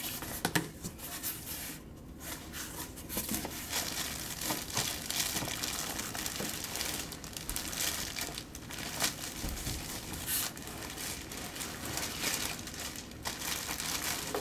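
A cardboard shipping box being opened by hand and a backpack in a clear plastic bag pulled out of it, the plastic wrapping crinkling continuously against the cardboard, with small knocks of the box flaps.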